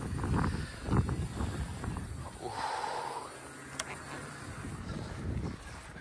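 Downhill mountain bike rolling slowly over tarmac: a low rumble and rustle of tyres and handling, fading after the first couple of seconds. One sharp click comes about four seconds in.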